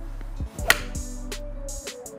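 A seven iron striking a golf ball off a driving-range hitting mat: one sharp crack about two-thirds of a second in, the loudest sound, over background music with a steady beat.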